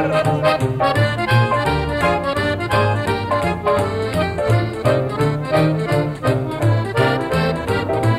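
Dance music with an accordion carrying the melody in quick notes over a steady, repeating bass line.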